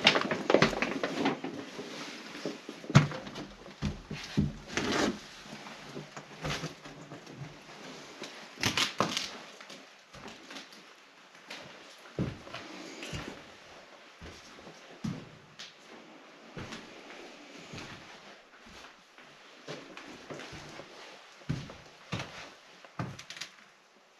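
Footsteps crunching and knocking over debris and broken boards on a littered wooden floor, irregular steps and knocks that are denser and louder in the first half and thin out later.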